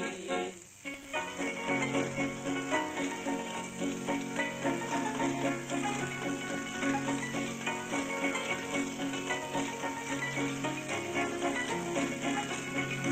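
Street barrel organ playing held chords over a steady bass note, starting about a second in after a short dip, heard through the hiss of an old 78 rpm record.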